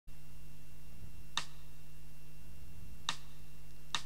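Three short, sharp clicks spaced unevenly, the last just before the singing starts, over a steady low electrical hum with a faint high whine.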